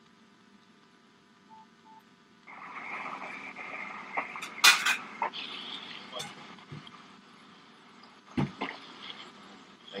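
Faint hum with two short soft beeps about a second and a half in, then a steady hiss with muffled, distant voices. A sharp click comes near the middle and a low thump later.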